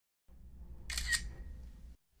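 Logo intro sound effect: a low rumbling swell that rises and fades, with a sharp double click and a brief high ring about a second in.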